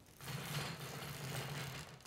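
A roller blind being pulled down by its bead chain, the chain running through the blind's clutch mechanism. It makes one continuous rattling run with a steady low hum, starting a moment in and stopping just before the end.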